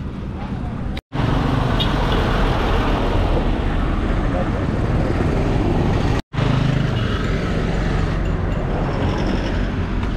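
Busy road traffic passing close by: a truck, motorcycles and a tuk-tuk, with a steady engine and road rumble. The sound cuts out briefly twice, about a second in and about six seconds in.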